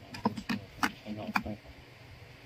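Sharp plastic-and-metal clicks and knocks as a folding aluminium-alloy and plastic phone stand is turned over and its hinged arms are folded shut: four or five clacks in under two seconds.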